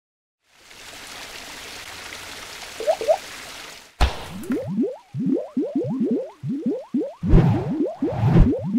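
Animated-logo sound effects: a hissing swell with two quick upward blips, then a sudden hit about four seconds in, followed by a run of quick rising squelchy glides. Heavier thumps come in near the end.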